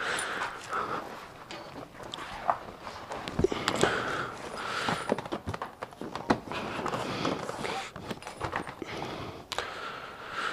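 Footsteps, rustling and small knocks of handling as a delivery bag is worked through to take out an order.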